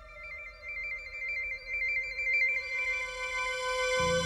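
Electronic synth score: a held note under a high warbling tone that flips rapidly between two pitches, like a telephone trill. The warble swells about a second in and fades out before the end.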